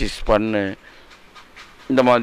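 Speech only: a man talking into a handheld microphone, breaking off for about a second in the middle before carrying on near the end.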